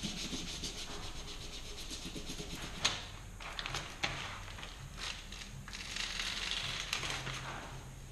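A hand rubbing vinyl decal transfer paper down onto a wall in quick repeated strokes, then the transfer paper crinkling with a few sharp clicks as it is pressed and handled.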